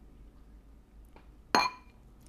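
Metal spoon clinking once against a ceramic bowl about a second and a half in, a sharp click with a short ring, after a few faint ticks of the spoon working in the bowl.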